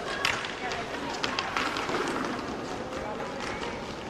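Inline roller hockey play: skate wheels rolling on the rink floor, with a scatter of sharp clacks from sticks hitting the puck and the floor, under a background of voices echoing in the arena.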